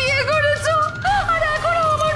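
A woman's high voice wailing in a wavering, sing-song lament, with long held notes.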